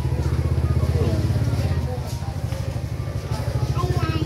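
A small engine idling steadily close by, a low, rapid, even putter that does not change.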